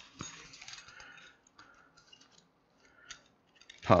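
Faint rustling and a few small clicks of a golf training aid's waist belt and straps being handled and fastened around the hips.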